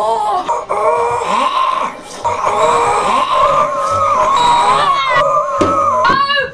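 A woman screaming in horror: a few short, high wailing cries, then one long, wavering high scream held for several seconds.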